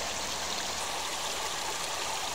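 Shallow stream flowing over stones, a steady, even sound of running water.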